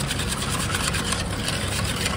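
Wire whisk beating a thin egg-and-milk mixture in a stainless steel bowl: a fast, steady scraping clatter of wire against metal and liquid.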